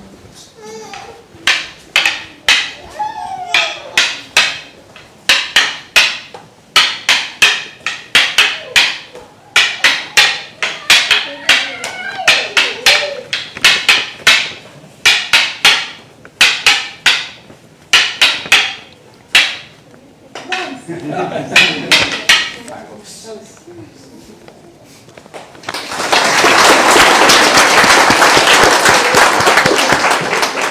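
Wooden escrima sticks clacking together in a rhythmic partner drill, starting slow and getting quicker, for about twenty seconds. A few seconds after the strikes stop, an audience breaks into loud applause.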